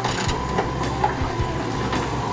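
Caterpillar wheeled excavator's diesel engine running steadily as it works, with a few knocks from broken concrete, the sharpest about halfway through.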